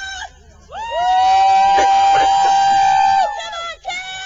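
Several voices join in one long, high, held cheer that starts about a second in and lasts about three seconds, the voices dropping out one after another near the end.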